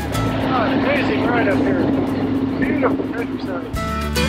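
Harley-Davidson Road Glide Limited V-twin engine running at a steady drone, muffled as if through a helmet or bike-mounted microphone, with an indistinct voice over it.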